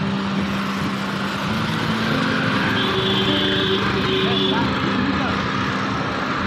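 Steady rushing noise of a bicycle ride through street traffic, with a motor vehicle's engine hum running underneath and shifting in pitch.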